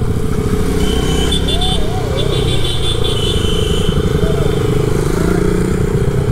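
Yamaha R15 V3's single-cylinder engine running at a steady cruising speed in traffic, with other motorcycles close alongside. A high, broken whine sounds on and off through the middle.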